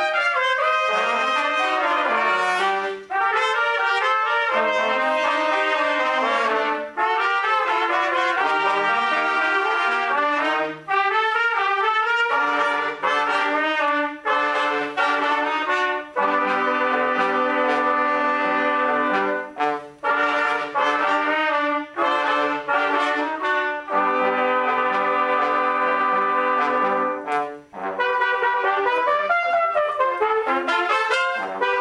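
A trumpet ensemble playing a piece in several parts: quick moving lines in the first half, then long held chords, with short breaks between phrases.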